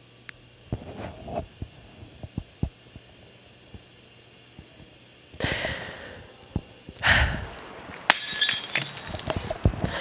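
A few faint clicks, then two short rushing swells about halfway through, followed near the end by a long crash with high tinkling fragments, like something shattering.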